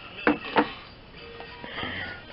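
Two sharp clicks about a third of a second apart near the start, as a small hard object is handled or set down, over faint background music.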